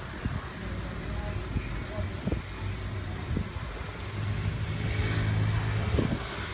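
Steady low hum of a car idling in stopped traffic, heard from inside the cabin, swelling a little near the end, with a couple of short low knocks.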